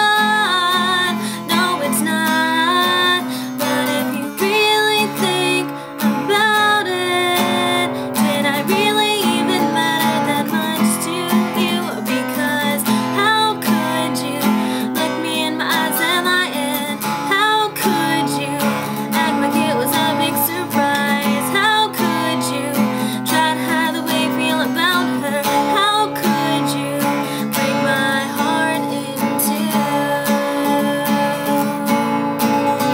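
A woman singing while strumming an acoustic guitar.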